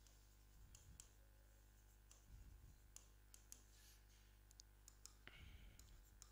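Faint, scattered clicks and taps of a stylus writing on an interactive display screen, with a few soft low thuds, over quiet room tone.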